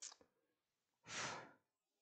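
A woman's sigh, one audible breath about a second in that lasts under a second, with a brief short breath at the very start; otherwise near silence.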